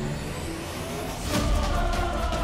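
Tense TV-drama background score: held tones over a low rumbling drone, with a sudden sound-effect hit about a second and a half in.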